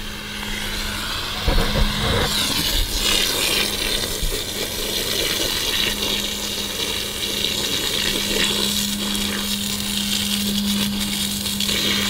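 Garden hose spray nozzle jetting a steady stream of water that splashes onto bare soil, with a steady low hum underneath.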